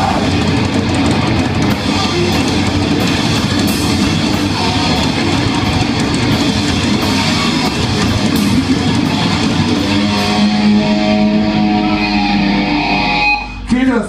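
Live crust-punk band with distorted electric guitars, bass and drum kit playing fast with cymbal crashes. About ten seconds in they hit a held chord that rings for a few seconds and cuts off suddenly near the end, closing the song.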